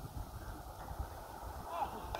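Distant, indistinct voices calling near the end, over an irregular low rumble with knocks.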